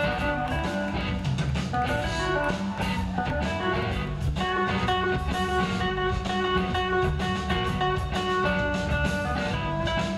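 Live rock band playing an instrumental stretch of the song: an electric guitar carrying long held melody notes over bass and drums.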